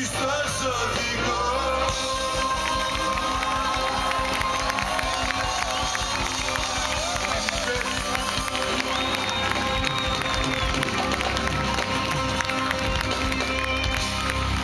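Live band playing the closing section of a song, led by electric guitar, with the crowd cheering and clapping.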